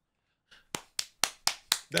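One person clapping their hands about six times in a quick even run, about four claps a second, starting about half a second in.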